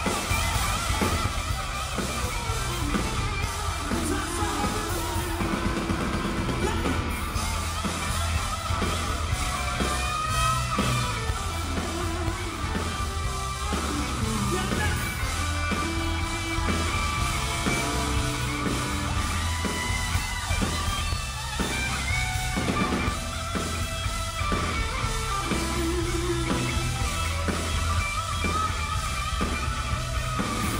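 Live rock band performing: electric guitar, a drum kit and a male lead singer on a microphone through the PA, over a steady beat.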